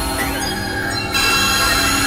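Dense, layered experimental electronic music: many sustained drone tones stacked together, with a few sliding pitches giving a squealing, metallic edge. A little over a second in, the upper frequencies return and the level steps up.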